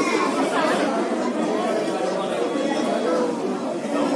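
Chatter of several people talking at once in a room, with overlapping voices and no single clear speaker.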